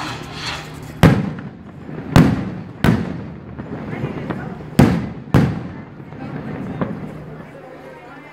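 Five loud firework bangs, at about one, two, three, five and five and a half seconds in, each trailing off in a short echo, over the murmur of a crowd.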